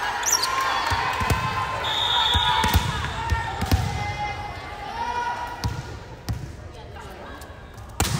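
A volleyball is bounced on a hardwood gym floor, making several low thumps, as a player gets ready to serve. A short, high referee's whistle sounds about two seconds in, and spectators chatter throughout.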